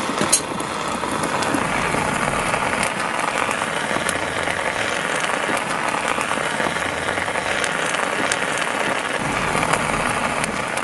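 Molten lava sizzling steadily against an ostrich egg, with a few sharp crackles.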